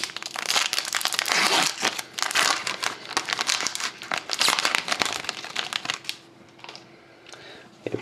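A foil-lined trading card pack wrapper being torn open and crinkled by hand, with dense crackling for about six seconds. It then goes quieter, with a few light clicks as the cards are handled.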